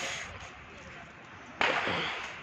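Firecracker bangs in the street: the echo of one fades out, then another sharp bang goes off about a second and a half in and rings out.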